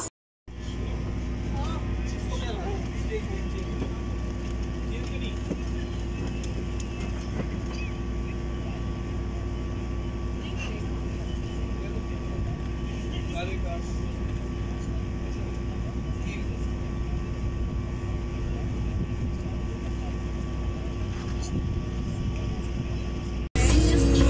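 Steady low drone of a cruise boat's engine running, with faint voices in the background.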